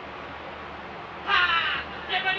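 A single loud, harsh, caw-like cry, about half a second long, in the second half, over steady low background noise.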